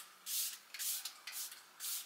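Hands rubbing in repeated strokes, about twice a second, a dry brushing sound.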